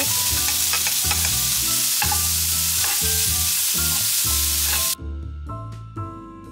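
Shrimp and minced garlic sizzling in a frying pan, a loud steady hiss that cuts off suddenly about five seconds in.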